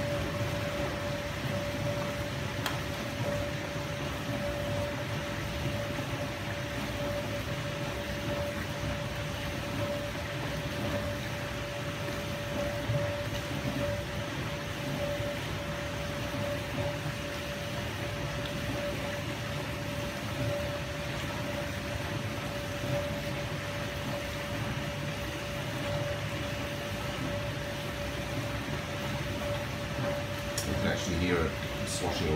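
Miele G 560 dishwasher running its pre-rinse, its powerful circulation pump pumping water round the machine: a steady hum with one clear steady tone throughout.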